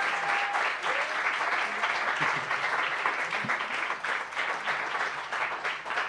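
Audience applause: many people clapping steadily, easing slightly near the end.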